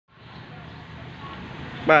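A steady low hum, with a voice starting to speak just before the end.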